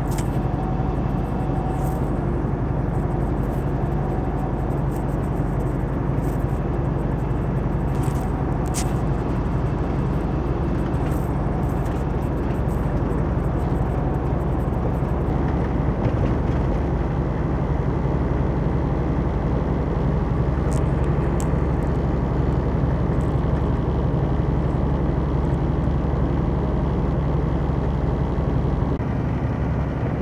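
Steady low drone of a semi-truck's engine and road noise heard inside the cab at highway speed, with a few faint ticks or rattles.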